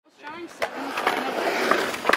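Skateboard wheels rolling on concrete, a steady noise that grows louder over the first second and a half, with a few sharp clacks from the board.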